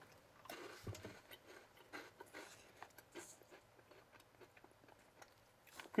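Faint chewing of a chocolate-capped baked wheat cracker snack: a few soft, irregular crunches in the first few seconds that die away.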